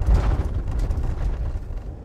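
Cabin noise inside a moving long-wheelbase VW Crafter campervan: a steady low rumble of road and engine, easing off near the end.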